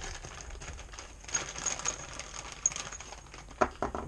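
Small hardware parts handled at a desk: a run of light, irregular clicks and rattles, with a few sharper clicks near the end.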